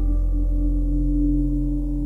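Ambient meditation music: one steady, ringing note held over a low sustained drone.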